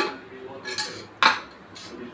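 Metal kitchen utensils clinking: several short, sharp knocks with a brief ring, the loudest about a second and a quarter in.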